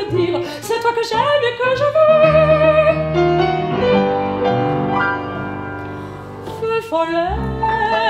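A woman singing a French chanson with vibrato on long held notes, accompanied by a Yamaha upright piano and double bass.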